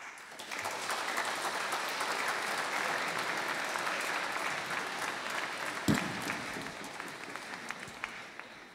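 Audience applauding: the clapping starts at once, swells within the first second and slowly thins out toward the end. A single thump sounds about six seconds in.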